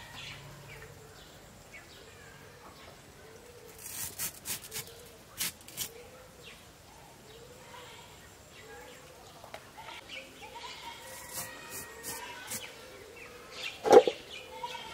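A banana stem being cut and stripped on a bonti blade, with a few crisp snaps about four to five and a half seconds in. Under it a faint call repeats about once a second, and a sharp knock comes right at the end.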